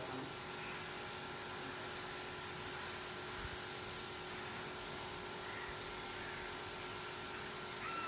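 A steady hiss with faint steady humming tones underneath, unchanging throughout, with no distinct knocks or clicks.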